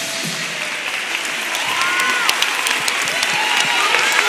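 Audience clapping with a few shouts, growing louder about a second in, as the last of the cheer routine's music stops just after the start.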